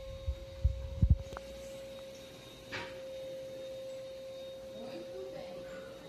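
A steady single-pitched hum of unknown origin sounds throughout. About a second in there are a few loud, low thumps of handling. A little under three seconds in there is a brief paper rustle as a glossy catalogue page is turned.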